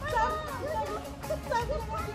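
Children playing, their high voices calling out and chattering without clear words.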